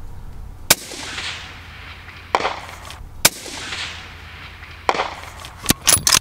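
Shots from a 20-inch bolt-action 6.5 Creedmoor rifle: sharp cracks, the loudest about a second in and about three seconds in, each followed by a long rolling echo, with softer reports between them. A quick run of clicks and knocks comes near the end.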